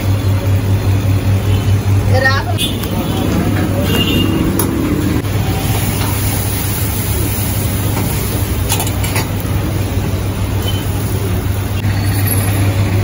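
Eatery and street ambience: people's voices over a steady low hum, with road traffic noise.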